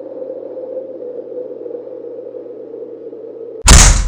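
A steady hum with a faint held tone under it, then a sudden loud door bang near the end as a door is flung open, ringing away over about half a second.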